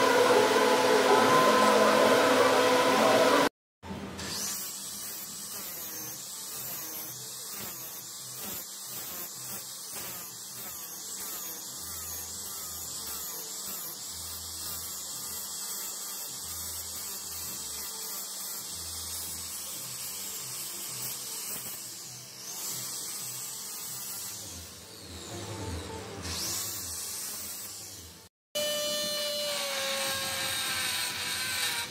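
Electric angle grinder with a flap disc grinding down an aluminium weld bead, its motor pitch wavering under the load. Near the end a straight die grinder takes over with a higher, steadier whine.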